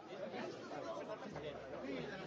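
Several voices talking over one another in indistinct chatter, with a low steady hum coming in a little past halfway.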